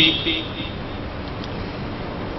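Steady background noise during a pause in a man's speech over a microphone. His voice trails off about half a second in.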